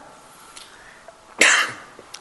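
A man's single short cough about one and a half seconds in, after a brief quiet pause.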